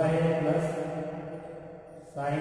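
A man's voice drawing out a long syllable at a nearly steady pitch, like a chanted or sung-out word rather than ordinary speech. It fades toward the end.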